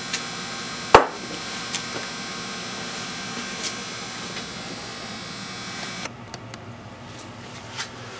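Small parts being handled at a workbench: a sharp knock about a second in and a few faint clicks, over a steady hiss that drops away about six seconds in.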